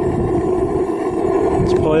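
Homemade propane foundry running, its propane weed burner fed by two blower fans: a steady noise with a constant low hum.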